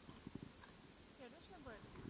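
Near silence, with a few faint ticks early on and a faint, brief voice with rising and falling pitch in the second half.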